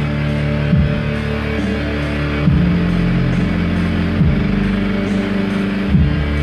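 Live music on two electric keyboards: low, sustained chords that change about every second and a half to two seconds, each change struck with a loud accent.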